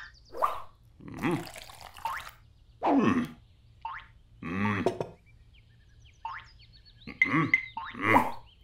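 Wordless cartoon-character vocal sounds: a run of short grunts and babbling noises whose pitch slides up and down, each under a second long with brief pauses between them, with a few short rising squeaks in between.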